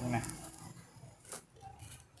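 Two faint, short clicks as the clutch (free-spool) knob on a 12 V electric winch is turned by hand to lock the cable drum.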